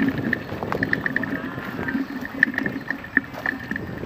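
Bicycles riding along a dirt forest track, heard close up from one of the riders: a steady rumble of tyres and frame with irregular light rattling clicks.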